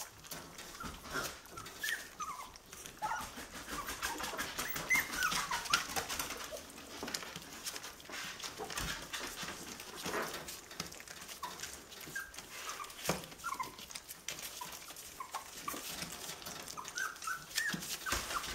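Litter of four-week-old schnauzer puppies whimpering and squeaking in many short, high cries, over frequent clicks and rustling as they feed from steel bowls on newspaper.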